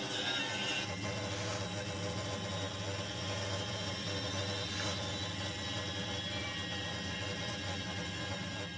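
Steady low drone of an aircraft cabin in flight, heard played back through a screen's speaker.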